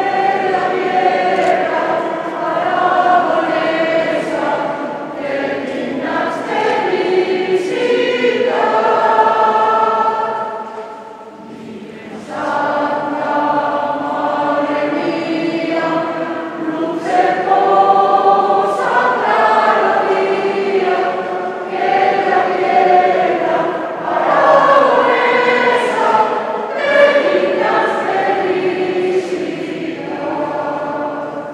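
Mixed church choir of men and women singing a hymn in sustained phrases, with a short break between phrases about eleven seconds in.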